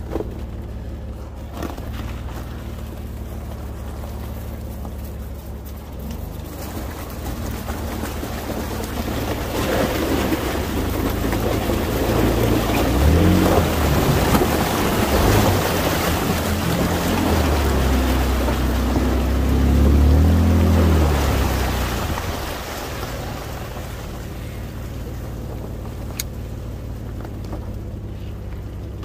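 A Jeep's engine revving as it drives through a deep, ice-covered water crossing, with water splashing. Engine and splashing build for several seconds, are loudest in the middle, and fade again toward the end.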